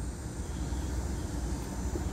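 Steady low hum under an even hiss inside a parked car's cabin: the car's idling engine and ventilation fan running.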